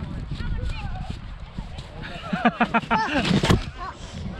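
Children's voices shouting and laughing, loudest in a quick run of cries a little past the middle, over a steady low rumble. A single sharp knock comes near the end.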